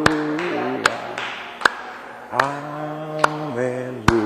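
A man singing an alleluia in long held notes, with hand claps keeping time about once every 0.8 seconds.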